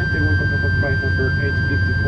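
A crew member's PA announcement in Spanish, heard inside an ATR 72-600 turboprop cabin. Under it runs the aircraft's steady low drone with a constant high-pitched whine.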